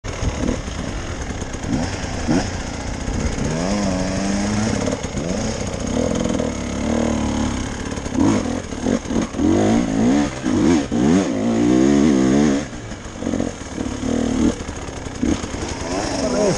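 Enduro dirt bike engine, heard from on the bike, revving up and down over and over as it is ridden over rough ground, its pitch rising and falling in quick surges that are busiest in the second half.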